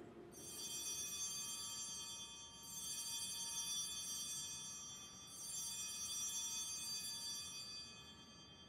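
Altar bells rung three times, about two and a half seconds apart, at the elevation of the consecrated host. Each ring is a bright jangle of many high tones that fades slowly.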